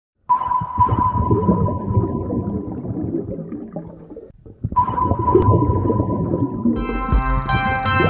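Synthesizer intro: a steady high tone starts suddenly over a low rumbling and fades out over a few seconds, then sounds again. Sustained synthesizer chords with bass come in near the end.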